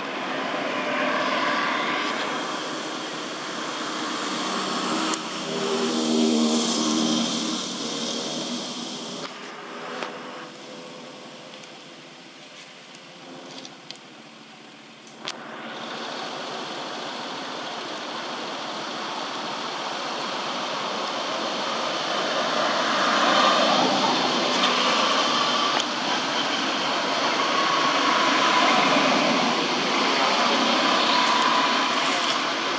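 Noise of motor vehicles passing, swelling and fading: one pass peaks a few seconds in and another builds over the second half. A couple of brief clicks come in the quieter middle stretch.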